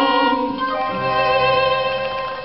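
The end of a live song: the last sung note dies away about half a second in, leaving violin and the accompanying instruments holding the final chord.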